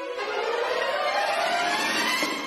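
Dramatic background music: a string swell that starts just after the beginning and rises steadily in pitch.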